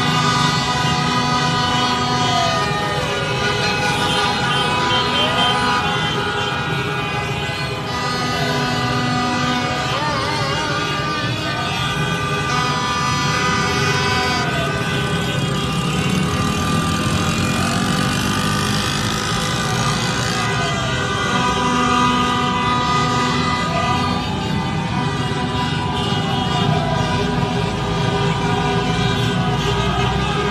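Many car horns honking in long, overlapping blasts over a crowd's voices, with a siren wailing up and down every two to three seconds.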